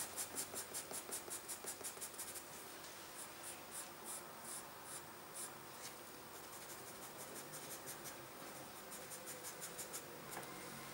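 White pastel pencil scratching on black paper in quick hatching strokes, about five a second for the first two seconds, then sparser and fainter. It is laying highlight along the outer edge of a drawn drop.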